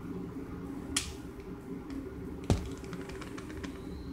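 Handling of a small black object in the fingers: a sharp click about a second in, a louder snap about two and a half seconds in, then a quick run of small ticks, over a steady low hum.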